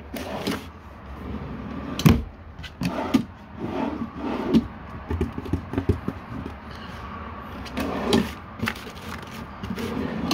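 Travel-trailer kitchen cabinet drawers, wood-sided, being pulled open, handled and pushed shut. There is a sharp knock about two seconds in, scattered wooden clunks and rattles after it, and another knock near the end.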